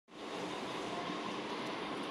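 Steady background noise, an even hum and hiss with no distinct events.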